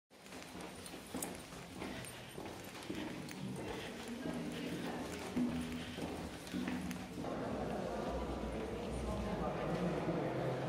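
Footsteps of people walking along a tunnel floor, irregular clacking steps, with other people's voices talking. From about seven seconds in, the voices thicken into the steady chatter of a crowd.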